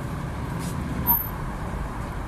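Steady low rumble of road traffic passing near an open-air street stall, with one brief sharp knock about a second in.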